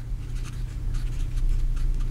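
Felt-tip marker writing on paper: a run of faint, irregular short scratching strokes as a word is written, over a steady low hum.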